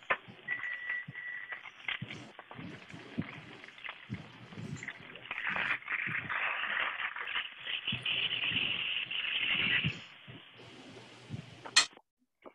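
Salad greens being lifted out of a clear plastic clamshell container and laid on a platter: irregular rustling and crinkling of leaves and plastic, densest in the second half, with a sharp click near the end.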